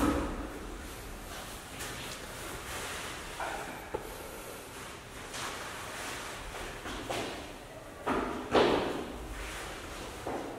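Room sound in a tiled restroom, with scattered short knocks and rustles; the loudest comes about eight and a half seconds in.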